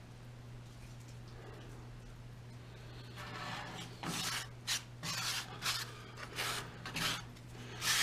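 Plastic spoon scraping and rubbing baking soda powder onto super glue on an aluminum pot, as a run of short scraping strokes, a couple a second, starting about three seconds in.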